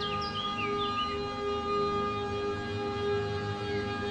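Ambient meditation music: a sustained drone of held tones, strongest near 432 Hz, swelling gently. A few short high chirping glides sound in the first second.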